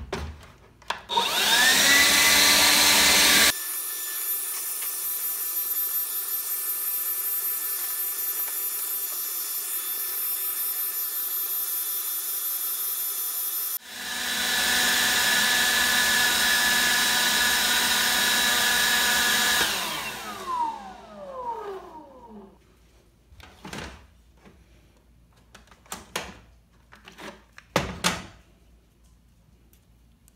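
DeWalt 20V XR brushless cordless handheld blower switched on and spinning up to full power with a rising whine, then running flat out. Its level drops suddenly about three seconds in and jumps back about fourteen seconds in. About twenty seconds in it winds down with a falling whine as the battery pack cuts out, whether from heat or from being fully drained; a few handling clicks and knocks follow.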